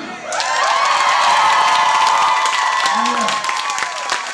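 Audience clapping and cheering at the end of a live song, rising a moment in, with held whoops over the applause.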